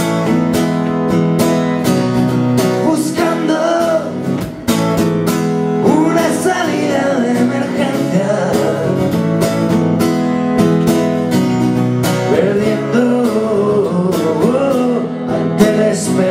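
Live acoustic guitar strummed steadily, with a man's singing voice coming in at times. The strumming breaks off briefly about four and a half seconds in, then picks up again.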